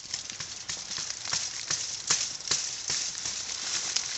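Leaves and twigs rustling and crackling, with many irregular sharp clicks, as a knife works at a small wild honeycomb on a tree branch.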